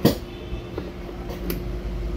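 A sharp click at the start, then a few faint clicks over a low steady hum, as an XLR cable connector is handled and plugged into the jacks of a mixing console.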